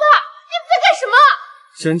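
A young woman shouting at a high, strained pitch in Mandarin, 'let go of my dad'. Near the end a man starts speaking in a lower voice.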